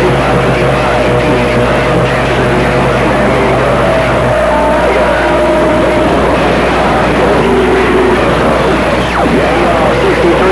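CB radio receiving long-distance skip: loud static hiss with overlapping, garbled sideband voices and steady whistling heterodyne tones from several stations on the channel. The whistles shift in pitch around the middle.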